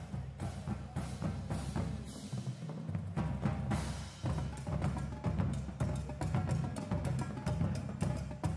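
High school marching drumline playing: bass drums, tenor drums and snares in a fast run of strokes, with the tuned bass drums stepping through a low pitched pattern underneath.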